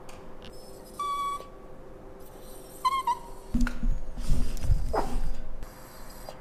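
Italian greyhound crying for food: two short, high, level whines, one about a second in and one about three seconds in. A few low thumps and rustles follow in the second half.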